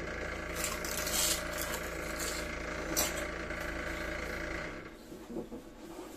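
Crisp filo-pastry cabbage pie crunching in short bursts as it is bitten and chewed, over a steady kitchen appliance hum that stops a little before the five-second mark.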